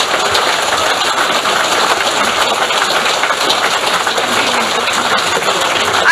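A large seated audience applauding, a dense, steady clapping.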